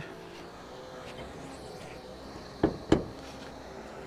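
Two short knocks about a quarter second apart near the end, from hands working at the front edge of a car's hood while reaching for the hood latch. Behind them is a faint steady background hum.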